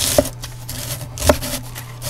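A large kitchen knife shredding a half head of cabbage on a wooden board: the crunch of the blade going through the packed leaves and two sharp knocks of the blade on the board about a second apart.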